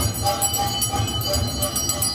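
Temple aarti bells ringing continuously over a fast, even beat of about three to four strokes a second.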